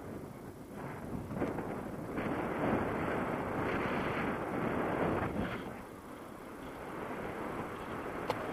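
Airflow rushing over the camera's microphone in paraglider flight, a steady roar of wind noise that swells louder from about a second in and eases off a little after five seconds.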